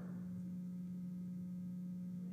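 A steady, low electrical hum holding one pitch, with nothing else over it.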